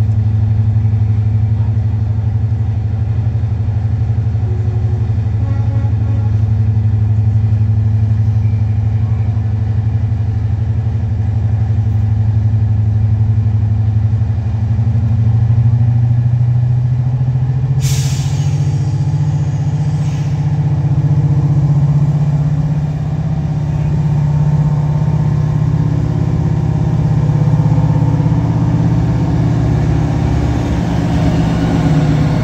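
British Rail Class 55 Deltic diesel locomotive with its Napier Deltic engines running, a steady low note at first that rises in pitch a little past halfway as it powers up and pulls away. A hiss of air lasting about two seconds comes just after the note rises.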